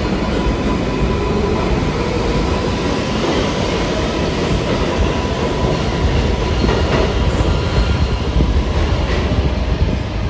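R62A subway train on the (6) local pulling out of the station and running off down the tunnel, steel wheels on the rails making a loud, steady noise. A faint steady whine sits under it in the first few seconds.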